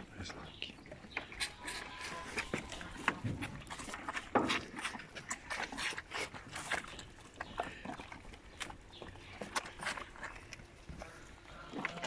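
Moose calves feeding at close range: one sucks milk from a plastic bottle while others chew and strip willow branches, giving irregular clicks, smacks and leaf rustles.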